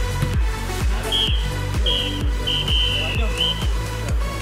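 Background electronic dance music with a steady kick-drum beat about twice a second. A few short, high, whistle-like notes sound over it in the middle.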